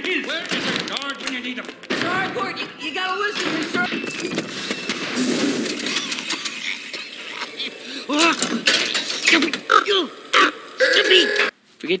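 Animated film soundtrack: characters' voices shouting and crying out without clear words, mixed with sound effects and music. It breaks off briefly near the end.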